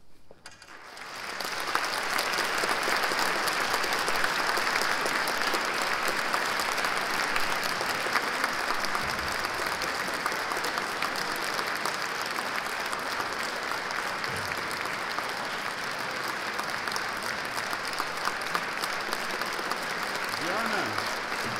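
Audience applauding in a concert hall. The clapping begins about a second in, swells quickly to full and stays steady.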